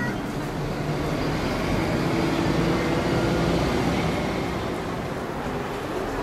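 A motor vehicle's engine running, a steady rumble that grows a little louder about halfway through and then eases off.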